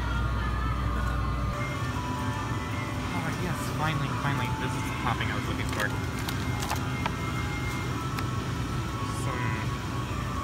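Supermarket background: music and indistinct voices over a steady low hum, which drops away about a second and a half in.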